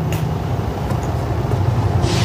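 A dense, low rumble from the soundtrack, with a couple of faint clicks, right after sustained musical notes cut off.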